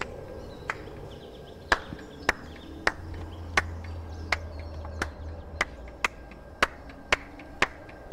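A series of sharp knocks, evenly spaced at about one and a half a second, over a low steady drone that swells in the middle.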